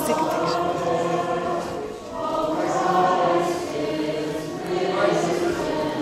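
Several voices chanting an Orthodox Easter hymn together in long held notes, with a brief dip about two seconds in.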